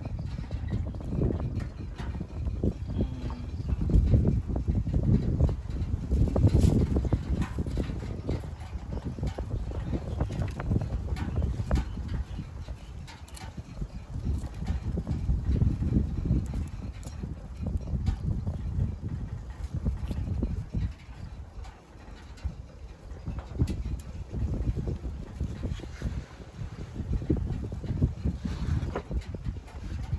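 Low, uneven rumble of wind on the microphone, swelling and fading, with scattered small clicks and knocks as a young macaque handles and eats fruit at a wooden table.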